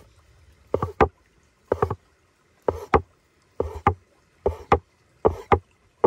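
Large cleaver-style knife chopping a folded sheet of fresh pasta dough into strips on a floured wooden board: the blade knocks on the wood in quick pairs, about once a second.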